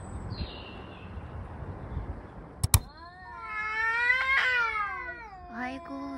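A domestic cat's long, drawn-out yowl begins about three seconds in and rises and then falls in pitch over about two seconds. It then drops into a lower, wavering moan: the caterwaul of a cat squaring up to another cat. Just before the yowl, a sharp double click is the loudest sound.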